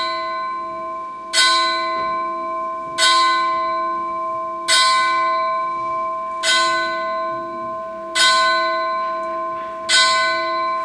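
A single bell tolling slowly at one pitch, a stroke about every one and three-quarter seconds, six times, each stroke ringing on and fading until the next.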